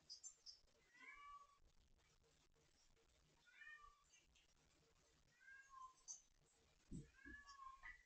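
Faint meows from an adult mother cat shut in another room, wanting out: four separate calls about two seconds apart, each falling in pitch at the end. A couple of soft thumps come near the end.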